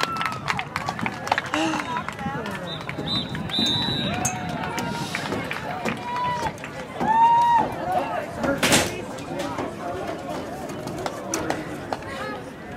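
Voices of players and spectators calling out across a soccer field, none close enough to make out words. A single sharp knock about nine seconds in.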